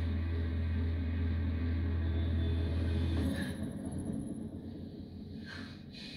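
A low, steady rumbling drone from a tense drama score, which cuts off suddenly about three seconds in and leaves a much quieter background.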